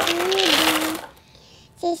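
M&M candies pouring from a glass jar onto a box of candy, a dense clattering rattle with a simple stepping melody tone over it. Both stop about a second in, and singing begins near the end.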